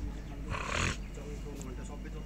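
Faint murmur of voices over a steady low hum, with a short, loud hiss about half a second in.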